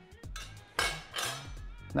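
A few light clinks and knocks of a steel kitchen knife against a stone countertop, over background music.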